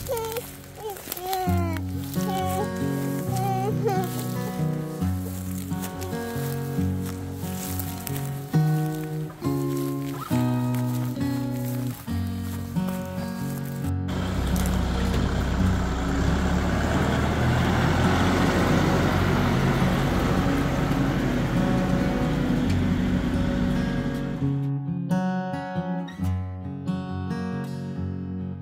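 Background music for the first half. After a sudden change about halfway through comes about ten seconds of a Kubota compact tractor's diesel engine running, a low drone with a rushing noise over it. The music returns near the end.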